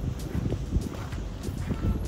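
Wind buffeting the microphone as a steady low rumble, with irregular footsteps on rock and gravel.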